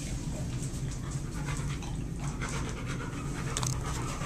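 A large dog panting at a food bowl.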